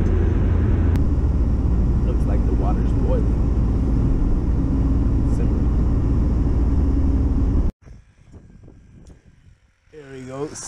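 Steady low rumble of road and engine noise heard inside a moving car's cabin. It cuts off suddenly near the end, leaving only a faint outdoor background.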